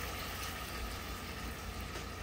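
Curry broth simmering in a metal pot on the stove, a steady bubbling hiss.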